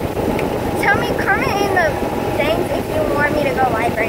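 Golf cart riding along with steady wind buffeting and rushing over the phone's microphone, and an indistinct voice over it.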